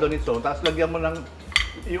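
Chopsticks and a fork clinking against plates and bowls during a meal: a few light clinks, the sharpest about one and a half seconds in.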